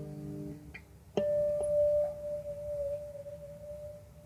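Electric guitar: the last notes of a phrase ring and fade out, then a single note is picked about a second in and left to ring, slowly dying away.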